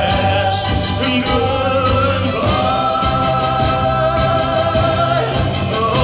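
Male lead singer with a live rock band of drums, bass, guitar and keyboards, singing long held notes over steady drum and cymbal beats.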